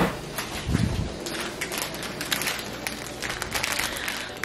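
Close handling noise: a sharp knock at the start and a dull thump about a second in, then light, irregular clicks and rustles.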